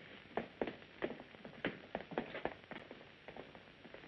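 Faint footsteps, a string of short irregular steps about two or three a second.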